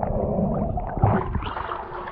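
Muffled water noise heard through a camera microphone underwater: a low rumbling wash with scattered clicks. About a second in it turns brighter and splashier as the camera nears the surface at the hull's waterline.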